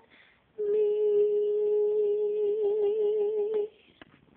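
A woman's unaccompanied voice humming one long held note, with a slight vibrato toward its end; it starts about half a second in and breaks off near the end.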